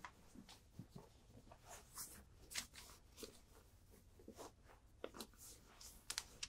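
Faint, intermittent rustling of fabric as a pillow form is pushed into a cloth envelope pillow cover and worked into its corners.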